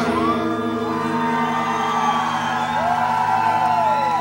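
Live rock band holding a chord on electric guitar through the amplifiers, ringing steadily as the song ends, while the crowd whoops and cheers over it.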